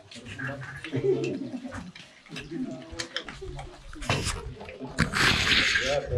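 Handling noises from a wire bird cage and a wire-mesh aviary door: scattered clicks and knocks, with a short rustle about five seconds in.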